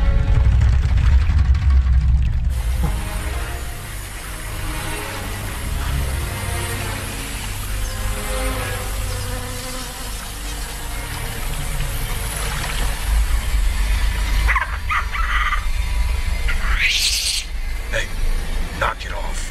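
Film soundtrack: a muffled low underwater rumble for the first couple of seconds, then swamp ambience with insects buzzing under quiet, ominous score. A few sharp animal calls come near the end.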